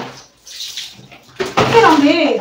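Water splashing and sloshing in a washtub as clothes are washed by hand, with a short knock at the start. A voice begins near the end.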